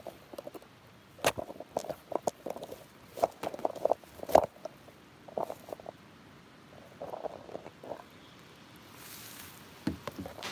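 Irregular knocks and bumps with rustling of grass and ferns, from a plastic kayak being shifted against the bank and plants brushing the camera as she moves. The sharpest knocks fall about a second in and again a little past four seconds.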